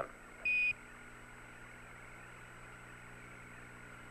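A single short beep, about a quarter second long, just after the start: the Apollo Quindar tone that marks the end of Mission Control's radio transmission to the astronauts. After it comes a steady, faint radio hiss with a low hum.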